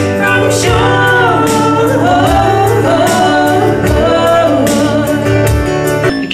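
A woman singing long, sliding wordless notes to her own strummed acoustic guitar in a live performance, the strums keeping a steady beat.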